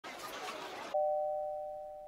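Logo intro sound effect: a hiss for about a second, then a chime of two tones struck together that rings and slowly fades.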